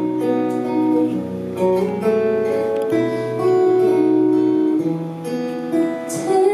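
Acoustic guitar playing strummed chords as live accompaniment, with a woman singing held notes over it.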